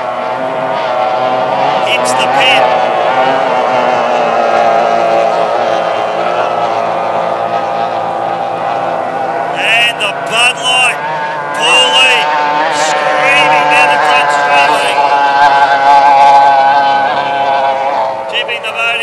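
Racing outboard motors on tunnel-hull powerboats running flat out at high revs: a loud, steady drone of several engines at once, their pitches drifting slightly as the boats pass.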